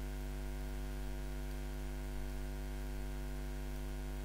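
Steady electrical mains hum with a faint hiss, a buzz of evenly spaced tones that does not change.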